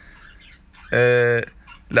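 A man's voice holding one drawn-out, flat-pitched vowel for about half a second, about a second in, after a short pause.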